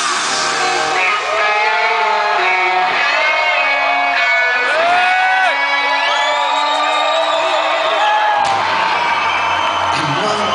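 Live rock band playing loudly. For most of this stretch the bass and drums drop away, leaving pitched lines bending up and down, and the full band comes back in about eight and a half seconds in.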